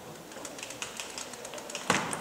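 Quiet sports-hall background with faint scattered ticks, then one sharp click near the end as a table tennis ball is struck, likely the serve that starts the rally.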